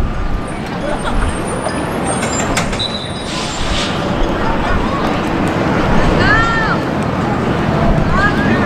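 Open-air soccer match ambience: a steady low rumble and hiss, with distant voices calling out on the field. One rising-and-falling shout comes about six seconds in.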